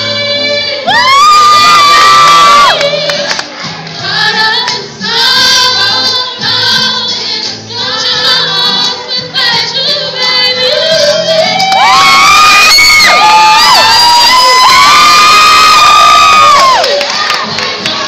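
Choir singing, with long high held notes that slide up into place about a second in and again in the second half, amid crowd cheering.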